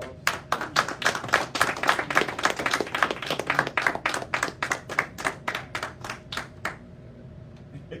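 Congregation clapping in applause. It starts just after the beginning, thick and fast, then thins to a few separate claps and stops about a second before the end.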